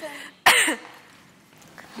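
A single short cough or throat-clearing burst from a person about half a second in, its voiced part falling in pitch.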